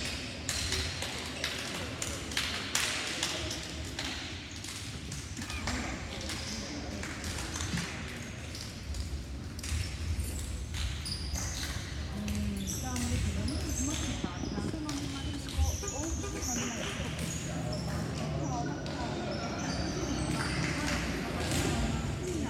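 Echoing sports-hall ambience of indistinct voices, with scattered short knocks and taps of a ball bouncing on the wooden court.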